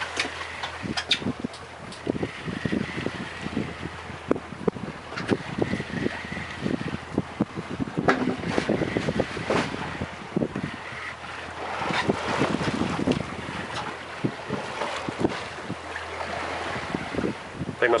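Wind on the microphone and water against a fishing boat at sea, over a steady low hum from the boat, with many short irregular knocks and clicks.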